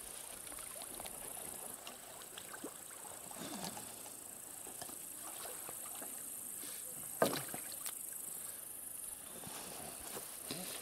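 Water sloshing softly around a man wading in a pond, with a few faint ticks and one sharp knock about seven seconds in.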